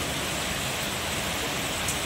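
Torrential rain pouring down onto a flooded street, a steady, even hiss of drops striking standing water.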